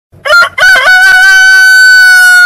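Rooster crowing: two short notes, then one long held note.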